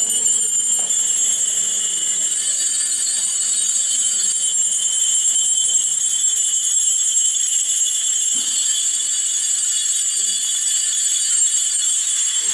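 Many small metal bells jingling continuously and evenly, shaken without pause as they are carried in a church procession.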